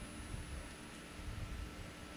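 Quiet room tone: a faint steady hiss and hum with a few soft low rumbles.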